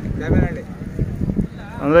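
A young bull lowing briefly near the end, its call rising in pitch.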